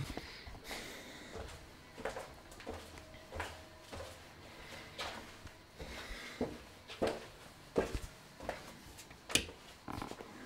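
Handling noise from a handheld camera being carried around a small room: scattered soft knocks and clicks, with one sharper click near the end.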